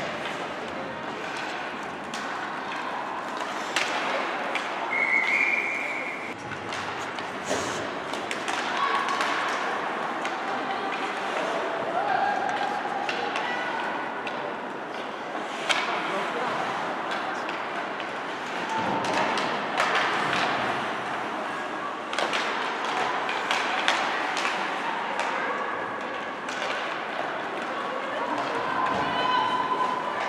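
Ice hockey in play in an echoing indoor rink: sticks and puck clacking, with heavy thuds of bodies and puck against the boards scattered through, over shouts from players and spectators.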